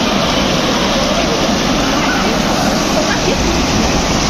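Mountain stream rushing over rocks and a small waterfall: a steady, even rush of water.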